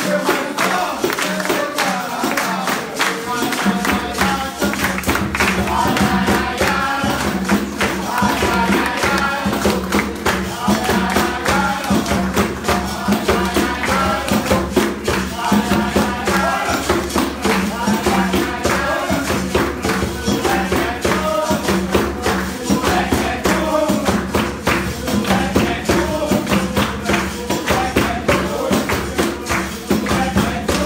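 Live capoeira roda music: an atabaque hand drum and a berimbau played with jingling percussion in a steady rhythm, with singing over it. A deeper low note joins about four seconds in.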